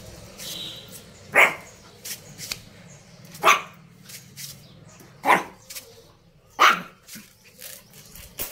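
Pomeranian barking: four short, sharp barks spaced about one and a half to two seconds apart.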